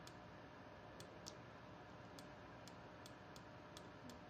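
Near silence with faint, irregular clicks, about two a second, from the input device used to write on screen.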